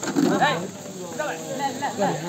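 Several voices shouting over one another during a kabaddi raid, loudest in the first half second.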